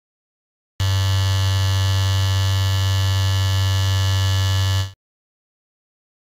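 Electric football game's vibrating metal field buzzing: one steady, loud electric buzz lasting about four seconds that starts about a second in and cuts off suddenly.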